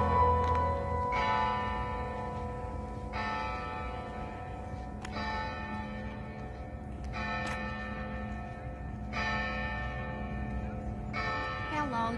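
A church bell tolling, one stroke about every two seconds, six strokes in all, each ringing on until the next.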